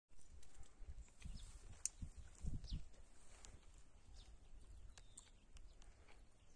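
Faint outdoor ambience in dry woodland: a few soft low thumps in the first three seconds, with scattered faint high clicks and short chirps.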